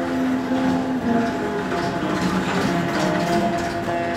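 A many-stringed plucked instrument with a row of keys being played, stepping through a melody of held notes over a rattling, mechanical clatter.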